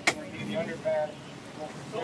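A single sharp knock just at the start, followed by faint, brief voices over low background noise.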